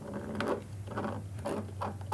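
Small rubber stub antenna being screwed by hand onto a digital radio hotspot's threaded antenna connector: a run of soft, irregular scratching clicks as the fingers twist it, over a low steady hum.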